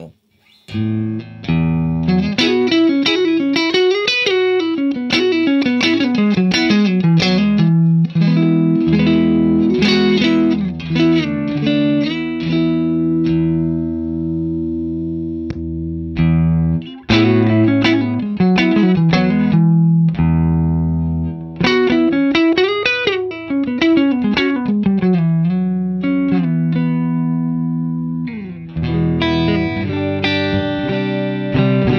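Electric guitar played clean through an amp's clean channel: picked, ringing notes and chords in a phrase that is played twice, with long held chords between. Near the end the playing changes as the comparison moves on to a Revv Dynamis tube amp's clean channel.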